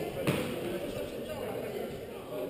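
A squash ball strikes once, a single sharp smack about a quarter of a second in, ringing briefly in the court over low background voices.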